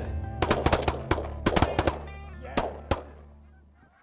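A rapid volley of shotgun fire from several guns, about a dozen shots in under three seconds, with geese honking between the shots. It all fades out near the end.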